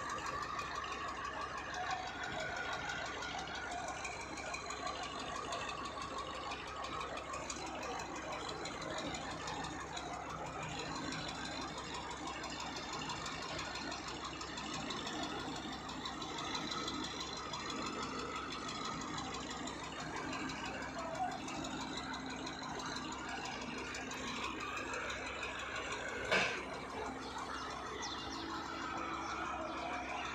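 Mobile crane engine running steadily while it holds the steel gantry beam, under indistinct voices of workers. One sharp knock late on.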